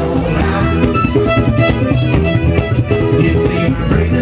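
Live acoustic string band playing an instrumental passage: strummed ukulele, plucked upright bass and fiddle in a steady rhythm.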